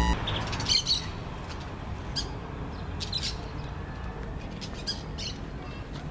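Birds chirping, short high calls coming several times, over a steady low outdoor background rumble.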